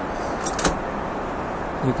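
Steady in-flight cabin noise of a Boeing 777-300ER, with two light clicks about half a second in.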